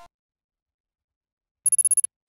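An electronic quiz sound effect. After the last moment of a fading chime, there is silence, then near the end a short, rapid trill of high beeps like a phone ringing.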